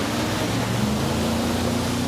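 A four-wheel drive's engine running as it drives through a creek, under a loud rush of splashing water.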